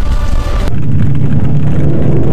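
Music breaks off abruptly, under a second in, and a loud, steady low rumble takes over.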